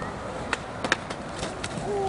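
Skateboard wheels rolling on concrete, then a string of sharp clacks and knocks as the board and skater come down on the stairs and pavement in a fall. The loudest knock comes just under a second in.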